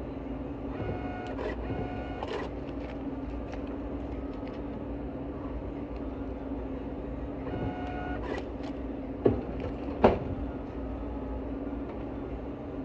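Point-of-sale receipt printer printing in two runs of whirring tones, over a steady low hum, with two sharp knocks near the end.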